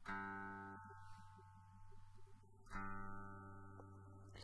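Electric guitar played through GarageBand for iPad's amp simulation on the Sparkling Clean setting, with the fuzz pedal just switched off. Two single notes are picked, one at the start and another about two-thirds of the way through, each ringing and fading out.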